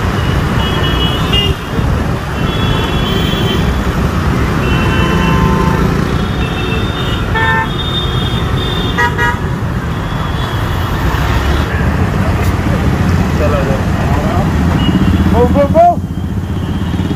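Busy road traffic: motorbike and car engines run steadily, and short horn toots come again and again, with quick repeated beeps about halfway through.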